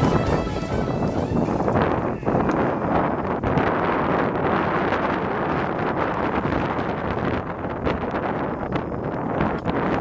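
Wind blowing over the camera microphone, a steady rushing rumble, with background music cutting off at the very start.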